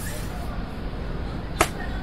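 Intro sound effects: a swish right at the start, then a single sharp whip-like crack about a second and a half in, over a steady low rumbling noise.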